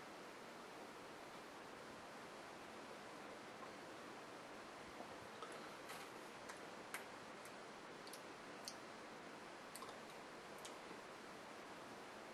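Near silence: steady faint room hiss with a scattering of faint small clicks through the middle and later part.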